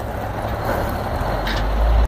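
International 2574 dump truck's Cummins diesel engine running as the truck drives across gravel: a steady low rumble that builds toward the end, with a brief hiss about one and a half seconds in.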